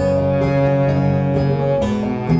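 Live acoustic folk band playing an instrumental passage: a banjo being picked over sustained held notes, with the chord changing near the end.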